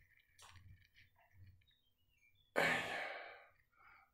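A man sighs once, a long breathy exhale that starts suddenly past the halfway point and fades away. Before it there is near silence.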